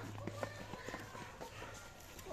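Footsteps of several people walking on a dirt path, irregular light scuffs and taps, with faint voices in the background.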